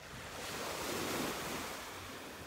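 A soft rushing noise that swells about half a second in and eases off toward the end.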